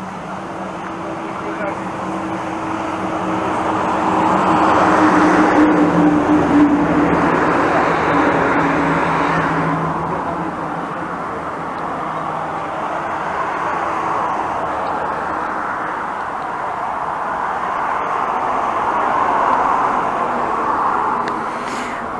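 Road traffic: cars passing on a nearby road, the tyre and engine noise swelling and fading twice, about a third of the way in and again near the end. Under it, a steady low hum fades out about halfway through.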